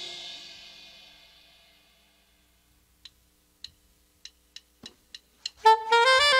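A dance band's final chord rings out and fades away. After a short pause, about seven sharp clicks count in the next tune, two spaced widely and then speeding up to about three a second. Just before the end, the saxophone and band come back in.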